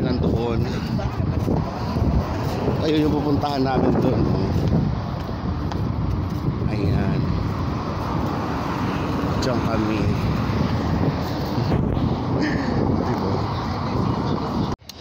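Steady city street traffic noise: a continuous low rumble of passing cars, with snatches of nearby voices.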